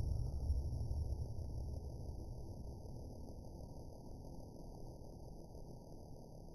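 Quiet background noise: a steady low rumble with a faint, even high-pitched hiss, slowly fading, and a few faint ticks.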